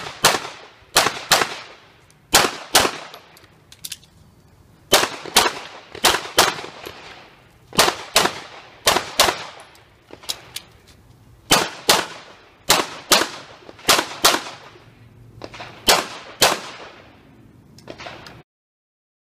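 Handgun shots fired in quick pairs as a shooter runs a USPSA stage, about two dozen shots in all. A short pause of a second or so falls between most pairs, and each shot rings out briefly.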